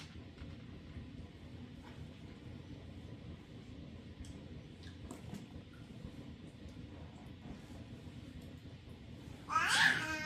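Quiet room tone with a few faint clicks and taps, then near the end a loud, high-pitched squeal from a toddler, wavering in pitch.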